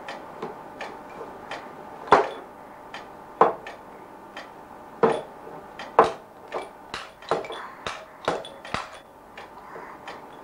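A baby knocking a hard plastic toy against the wooden tray of a high chair: irregular sharp knocks, a few louder ones roughly every second or so, with lighter clicks and taps in between.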